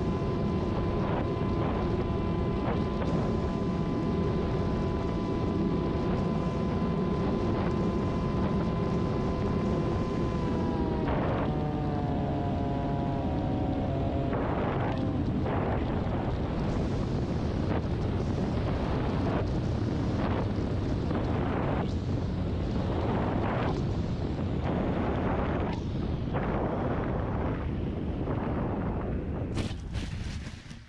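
Onboard-camera audio of a Ritewing Z3 flying wing in flight: heavy wind rushing over the camera with a steady electric motor and propeller whine. Around ten seconds in the whine drops in pitch as the throttle comes back, and it fades out by about fifteen seconds. The glide goes on with gusty wind surges, and near the end the aircraft touches down and slides into the grass with a brief loud burst of noise.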